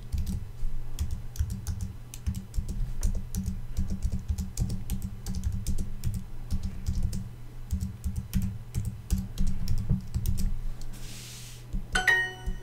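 Computer keyboard being typed on: irregular runs of quick key clicks that stop about ten and a half seconds in, over a steady low hum.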